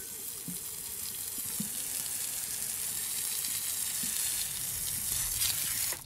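A steady hissing wash of noise that grows slowly louder and cuts off suddenly at the end.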